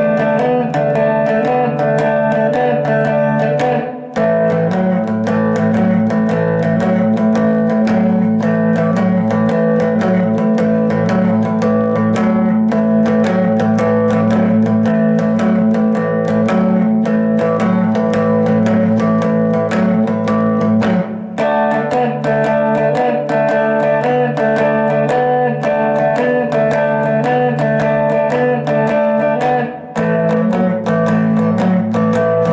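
Electric guitar playing a blues shuffle in A: the 'blues stretch' riff, a steady, evenly picked low two-note pattern that rocks back and forth. The riff moves to a new chord about 4 seconds in and shifts back about 21 seconds in, following the twelve-bar changes.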